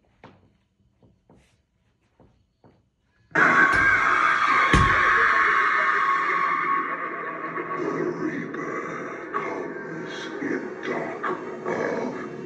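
Spirit Halloween Mr. Dark animatronic (Tekky Toys) activating: after a few near-silent seconds with faint clicks, its spooky soundtrack of music and effects starts suddenly and loudly about three seconds in. A heavy thud comes about a second and a half later as the figure's spring mechanism extends it upward.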